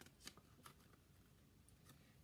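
Faint paper rustles and a few soft clicks as a page of a small book is turned, over near silence.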